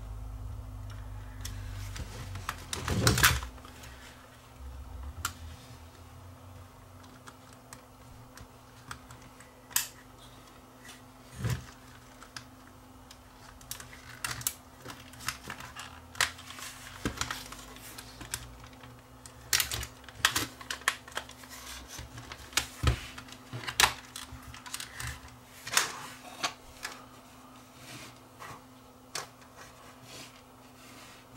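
Irregular sharp plastic clicks and taps as the housing parts of a Sony CCD-TR71 camcorder are handled and fitted back together, with the loudest cluster about three seconds in.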